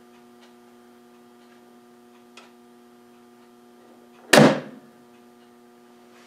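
Homemade ten-stage coil gun firing once at 100 volts on its IGBT stages: a single sharp bang about four seconds in with a short ringing tail, after a faint click, over a steady electrical hum.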